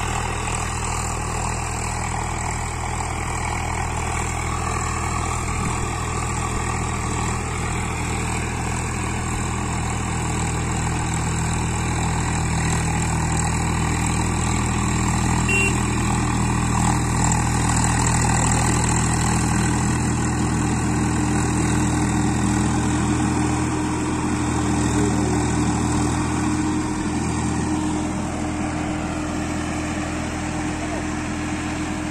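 Swaraj 744 XT tractor's three-cylinder diesel engine running steadily under load while pulling an 8-foot rotavator, swelling a little louder about midway.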